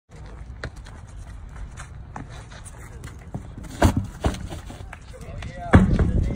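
Large tractor tyres thudding onto asphalt as they are flipped: two sharp thuds about four seconds in and a louder one near the end, over a steady low rumble.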